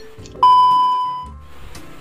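A single electronic chime about half a second in, one clear tone that fades away over about a second: the video-chat site's sound signalling that a new chat partner has connected.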